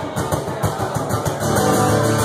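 Live amplified acoustic guitar, strummed in quick percussive strokes during a break between sung lines.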